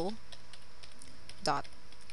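Typing on a computer keyboard: a quick run of keystroke clicks as a web address is entered.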